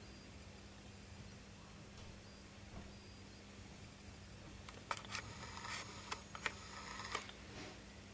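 Handling noise from a handheld camera: a cluster of sharp clicks and short crackly rustles from about five to seven seconds in, over a faint steady low hum.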